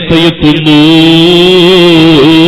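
A man's voice chanting in a melodic recitation style: a few short broken notes, then one long held note from about half a second in.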